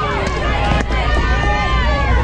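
Several voices calling and shouting at once, some held long, over a steady low rumble.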